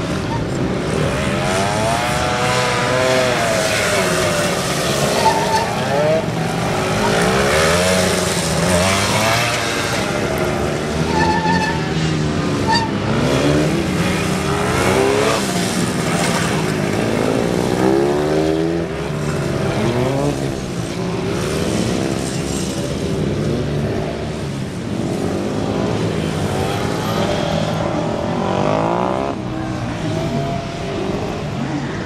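Honda NSR250R's two-stroke V-twin engine revving up and falling back over and over, its pitch rising and dropping every second or two, as the motorcycle accelerates and brakes between tight turns.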